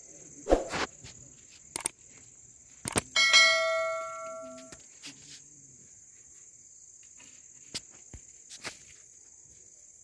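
Crickets chirping steadily, with a few sharp clicks and knocks in the first three seconds. About three seconds in, a small metal bell is struck once and rings out, fading over about a second and a half.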